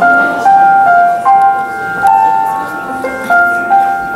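Live electronic keyboard playing a slow melody of held notes, a new note about every half second to second.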